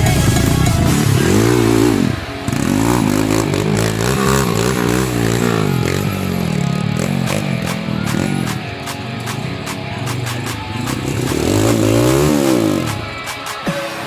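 Background music with a dirt bike engine revving up and down several times, under load on a steep rocky climb.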